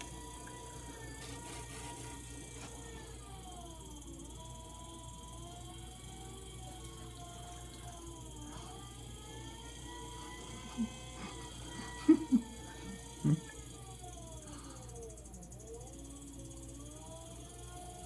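Electric potter's wheel spinning, its motor whine sliding down and back up in pitch several times as the speed changes, over a steady low hum. A few short, louder sounds come about two-thirds of the way through.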